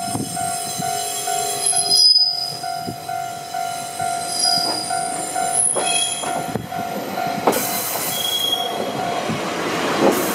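A Wakayama Electric Railway 2270-series two-car electric train running slowly through a curve into a station, its wheels squealing in thin high tones that come and go. A steady, slightly pulsing tone sounds until about nine seconds in, and the rumble of the wheels grows louder from about seven and a half seconds as the cars pass close by.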